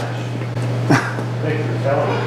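Indistinct voices over a steady low hum, with a short sharp vocal cry that falls in pitch about a second in.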